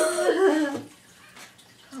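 A person's laughter, a wavering voice that goes for just under a second and then breaks off, leaving a quiet room.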